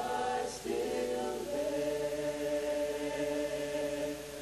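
Choir singing, holding long chords that change a few times, the last held for over two seconds.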